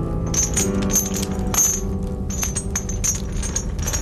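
Metal shackle chains clinking and jingling in irregular strokes, over a music score holding long sustained notes.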